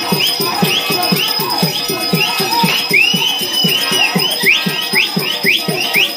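Live folk-theatre music: a barrel-shaped hand drum beating a quick, steady rhythm, with a high melody line above it whose notes slide up into pitch and are now and then held longer.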